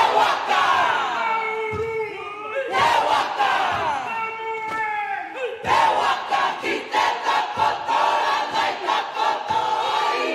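A large kapa haka group chanting in te reo Māori in unison, loud, each phrase starting high and sliding down in pitch, with new phrases starting about every three seconds.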